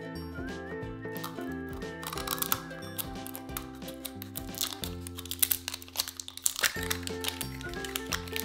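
Light background music, with plastic shrink-wrap crinkling and crackling as it is torn off a Paw Patrol Mashems toy capsule. The crinkling starts about two seconds in and is busiest in the second half.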